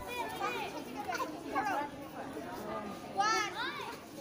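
Many schoolgirls' voices talking and calling out at once, with one loud, high-pitched shout a little over three seconds in.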